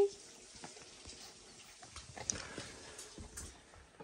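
Quiet room tone with a few faint, scattered clicks and rustles.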